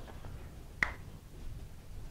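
Quiet room tone in a pause between speech, with one short, sharp click a little under a second in.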